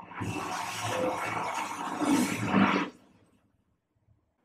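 Film sound effect: a loud rushing roar with a low rumble underneath, swelling near the end and cutting off after about three seconds.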